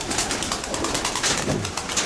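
Racing pigeons, widowhood hens, cooing inside their loft section, with many short rustles and clicks from the birds moving about.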